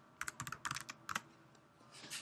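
Typing on a computer keyboard: a quick run of about ten keystrokes, stopping a little past a second in.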